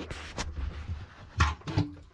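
A wooden cabinet door and its push-button latch being handled as the door is opened: a short rustle with a click, then a louder knock about a second and a half in.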